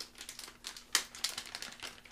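Plastic bait package crinkling as it is handled, a run of irregular crackles with one sharper snap about a second in.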